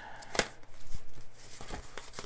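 Paper sticker sheets in a spiral-bound sticker book being handled and flipped, with a sharp click about half a second in and softer knocks and rustling after.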